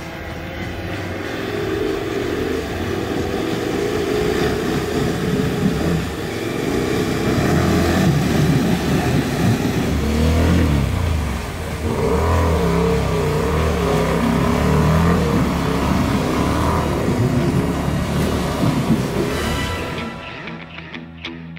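KTM adventure motorcycle's engine revving hard and unevenly as it is ridden through a deep river crossing, its pitch rising and falling as the throttle is worked against the water's drag.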